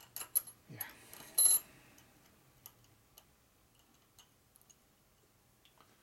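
Small steel transmission parts (a retaining washer, clips and gears) clicking and clinking as they are handled and fitted onto a gearbox shaft. There are a few sharp clicks in the first second and a half, the loudest a bright metallic clink that rings briefly, then only sparse faint ticks.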